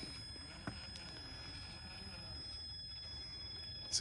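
Quiet, steady low running noise of a 1/10-scale Traxxas TRX4 RC crawler with its stock brushed motor creeping over sandstone ledges, with one small click about two-thirds of a second in.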